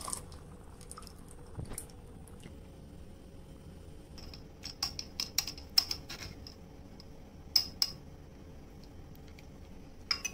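Metal spoon clinking against a metal mesh strainer while pressing wet paper pulp to drain out the water. A few sharp clinks, most of them in a cluster around the middle.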